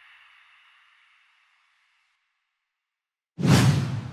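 Logo-animation whoosh effects. A swoosh fades away over the first second or so, then comes a pause of near silence. A second, loud whoosh with a deep low end starts suddenly about three and a half seconds in.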